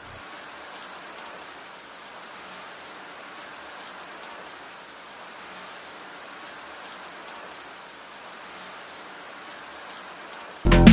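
A steady, even hiss of noise like rain, with a fine crackle in it.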